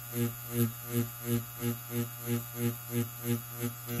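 Tattoo machine running with a steady electric hum that swells about three times a second as the needles are whipped in and out of the skin during whip shading.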